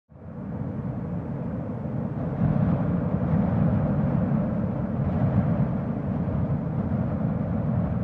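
A steady, low rumbling roar with a hiss above it. It swells a little about two seconds in and eases off near the end.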